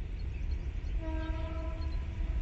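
Horn of an approaching WDM3D diesel locomotive, still out of sight, sounding one steady note for about a second, about halfway through, over a low rumble.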